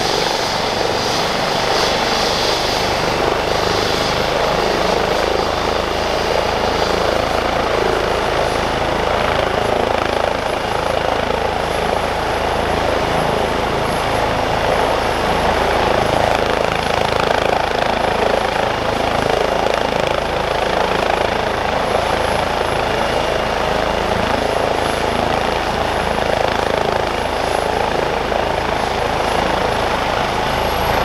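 Airbus H135 P3 helicopter's twin Pratt & Whitney PW206B3 turboshaft engines and main rotor running steadily while it sits on the ground, rotor turning. A thin, high turbine whine comes in about eight seconds in and holds.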